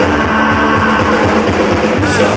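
Ska-rock band playing live: electric guitars and drums, with held notes and a steady beat, in a passage without singing.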